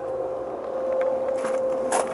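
Handling noise from a handheld camera being moved: rubbing and rustling, with a brief scrape near the end, over a steady hum.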